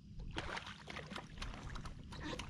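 A hooked fish thrashing at the surface beside a kayak: a quick, irregular run of water splashes that starts about half a second in.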